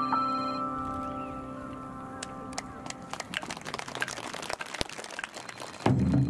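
An electronic keyboard's held chord rings out and fades away over the first two and a half seconds, followed by scattered light clicks and taps. Then wadaiko drums come in loudly right at the end.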